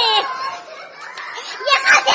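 High-pitched voices wailing in mourning: a cry that falls in pitch right at the start, a brief lull, then more cries near the end.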